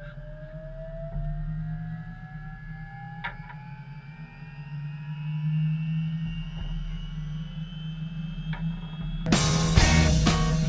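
Helicopter turbine spooling up for takeoff: a slowly rising whine over a steady low hum. Loud music cuts in near the end.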